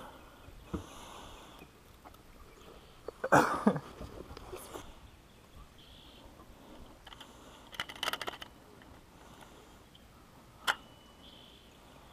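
Quiet handling of a largemouth bass on a handheld digital fish scale: a brief louder sound a few seconds in, a cluster of clicks about eight seconds in, then a sharp click and a short high beep near the end as the scale settles on the weight.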